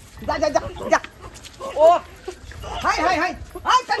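Several women's voices shouting and crying out during a scuffle, in short bursts whose pitch slides up and down.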